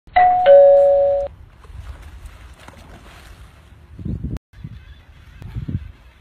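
A loud two-note descending chime, like a doorbell's ding-dong, lasting just over a second, then a quieter low rumble with two brief low swells near the end.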